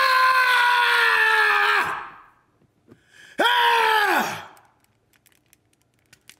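A man screaming with excitement, twice. The first scream is held at a nearly steady pitch for about two and a half seconds. After a short gap comes a second, shorter scream whose pitch drops as it ends.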